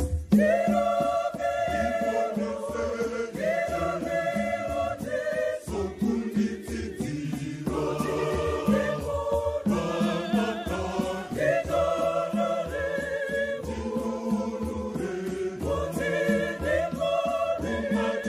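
Choir singing a Shona Catholic hymn in harmony, in phrases a few seconds long, with hand drums beating underneath.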